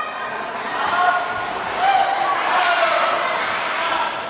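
Indistinct voices of people talking echo through a large sports hall, with an occasional faint thud.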